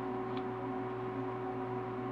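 Steady electrical hum, a few fixed low tones over a faint hiss.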